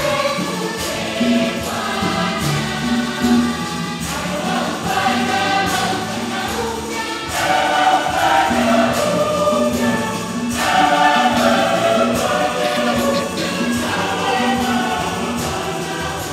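Church congregation and choir singing a hymn together in chorus, with a steady drum beat underneath.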